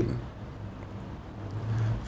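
Room tone: a steady low hum under faint hiss, with no clear event.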